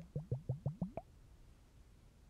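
Water bubbling close to an ASMR microphone: a quick run of about six liquid plops in the first second, each rising in pitch, then a pause.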